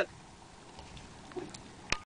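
Faint low background noise with a few light ticks, and one sharp click just before the end.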